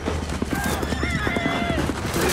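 Film sound of horses charging through snow: hoofbeats knocking and a horse whinnying from about half a second in to near the end.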